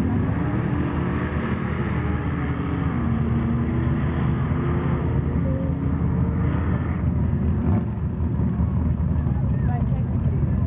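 Engines of a Chevrolet truck and a Jeep running hard at high revs as they race away down a dirt drag strip, the pitch stepping down about three seconds in.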